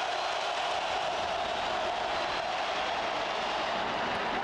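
Stadium crowd noise during a football play: a dense, steady wash of many voices with no single voice standing out, heard through a TV broadcast.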